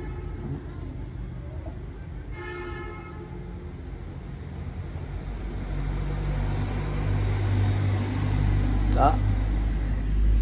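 Motor vehicle engine rumbling nearby, swelling louder from about six seconds in and staying loud, with a brief horn toot about two and a half seconds in.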